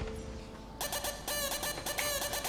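Mobile phone ringing with a homemade ringtone: a quick, rhythmic melody of repeated notes starts suddenly about a second in.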